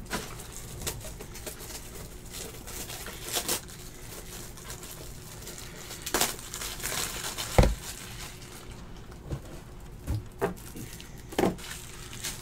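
Quiet handling noises of cards and packaging on a table: a few light, sharp knocks and clicks spaced a second or more apart, with faint crinkling.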